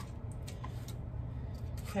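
Light handling of a ribbon and paper pages, a few faint soft ticks over a steady low hum.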